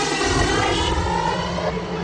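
Hardstyle track in a breakdown: a sweeping, jet-like synth effect of many layered tones that dip and then rise in pitch, with no steady kick drum.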